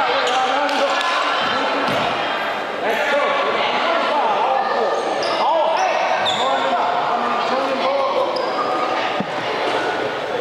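A basketball bounces a few times on a hardwood gym floor, echoing in the large gym, against the overlapping chatter and shouts of many voices.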